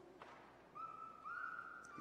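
A faint whistle-like tone in two steps: one steady note held about half a second, then a slightly higher note held about half a second.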